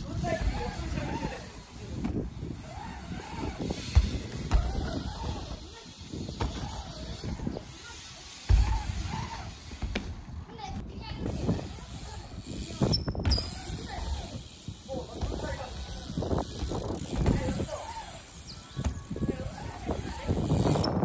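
Indistinct voices talking, over the low rolling rumble of BMX bikes riding the skatepark ramps.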